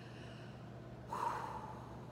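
A woman takes one short, airy breath about a second in, lasting about half a second, over low room tone.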